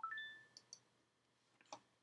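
Faint computer-mouse clicks, a couple about half a second in and another near the end, after a short faint tone at the start that fades out within half a second.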